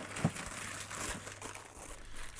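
Clear plastic bags of frozen rats crinkling and rustling as they are handled and pulled out of a frosted freezer, with a couple of light knocks.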